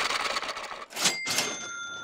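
Cash-register "ka-ching" sound effect: a fading tail of music, then two sharp clicks about a second in, each followed by ringing bell-like tones, as the running cost total goes up.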